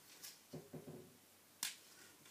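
Quiet handling of glue dots and cardstock, with one sharp click about one and a half seconds in.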